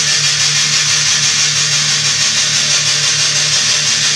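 Electric guitar through high-gain distortion, chugging palm-muted on one low note or chord with fast, even downstrokes.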